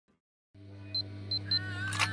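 Intro music and sound effects: after half a second of silence, a steady low hum comes in, with three short high beeps and a wavering electronic tone building over it.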